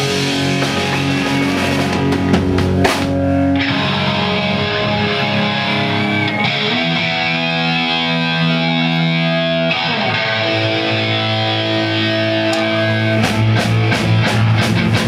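A live punk band playing loud electric guitars in sustained, ringing chords. The drums drop out after about three seconds and come back in near the end. No vocals are heard.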